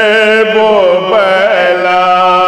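Soz, a Shia mourning lament, chanted by men: a lead voice with his chorus, on long sliding notes that settle into one held note near the end.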